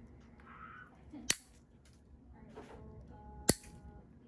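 Single-action toenail nipper snipping toenail: two sharp clicks about two seconds apart as the jaws close through the nail.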